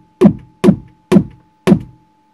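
Vermona Kick Lancet analog kick drum synthesizer triggered four times, about two hits a second. Each kick has a sharp click on top from the square-wave attack snap being mixed in, then a low thud that falls in pitch.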